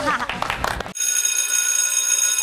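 Hand clapping with laughter, cut off about a second in by an edited-in sound effect: a bright, steady bell-like ringing of many high tones.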